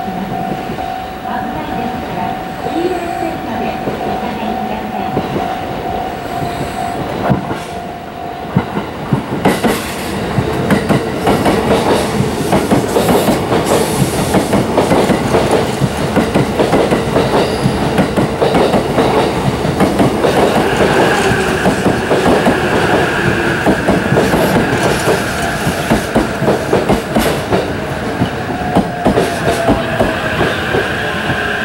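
Series E353 limited express electric train pulling into the station alongside the platform, its wheels clicking in quick, dense runs over the rail joints. A steady tone sounds for the first eight seconds or so, and a steady high squeal joins about twenty seconds in.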